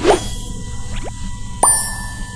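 Three short cartoon pop sound effects, each gliding quickly upward in pitch, from an on-screen subscribe / bell / like button animation, over faint background music.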